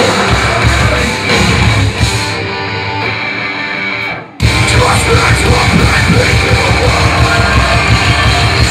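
Live heavy rock band playing loud, with guitars, drums and vocals. About two seconds in, the drums and cymbals drop away for a thinner passage. Just past halfway the music cuts out for a moment, then the full band crashes back in.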